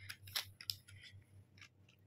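Jack industrial sewing machine stitching slowly: faint, irregular mechanical ticks over a low hum.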